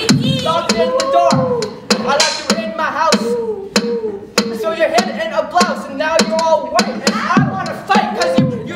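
Mouth beatboxing: sharp vocal drum clicks at a steady beat, with a wordless voice melody gliding up and down over it.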